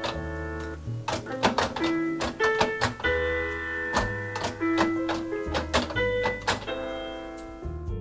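Single piano notes from the LEGO Grand Piano's smartphone app, triggered one after another as the model's plastic keys are pressed, each note starting with a click of the key. The keyboard is not polyphonic and registers a press only some of the time, playing one note, sometimes two.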